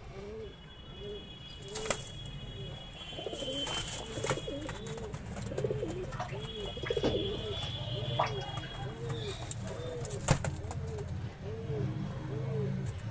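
Domestic pigeons cooing: a steady series of low, rolling coos, about one a second. A few sharp clicks come in among them, the loudest about ten seconds in.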